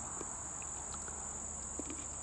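Steady high-pitched chorus of insects, an unbroken buzz, with a few faint clicks.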